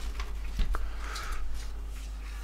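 Plastic disc lid of a portable DVD boombox being lowered shut by hand: faint clicks and soft handling rustle, with no loud snap.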